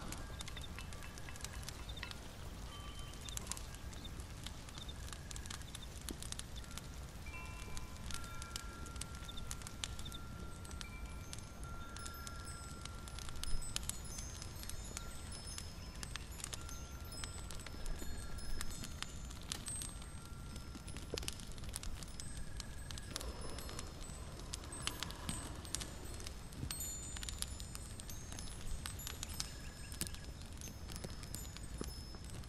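Wind chimes tinkling: short, scattered high notes at many different pitches, over a steady low rumble and light, constant crackling.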